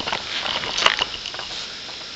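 Rustling and small crackles of dry leaf litter and twigs being disturbed by hand, with one sharper snap about a second in.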